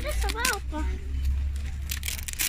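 A high-pitched child's voice speaking briefly, over a steady low rumble, with a short sharp click or rustle near the end.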